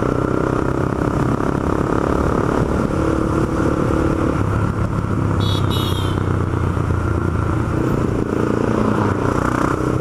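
Honda CB300's single-cylinder engine running steadily as the motorcycle cruises in gear, heard from the rider's seat; the bike is geared with a 15-tooth front sprocket. A brief high squeak about five and a half seconds in.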